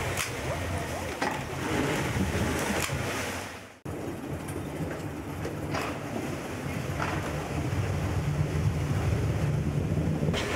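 Wind buffeting the microphone over open water, with a steady low rumble and the wash of water; the sound drops out for a moment about four seconds in.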